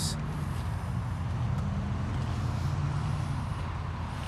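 Steady low hum of an idling motor vehicle engine, with faint outdoor background noise.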